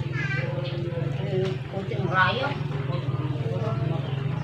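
A motor running steadily with a low, even drone, with short pitched voice-like calls near the start and a louder one about two seconds in.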